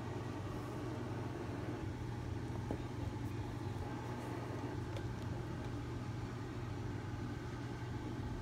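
A steady low hum, with a few faint soft taps as stacks of small paperback books are shifted about in a cardboard box.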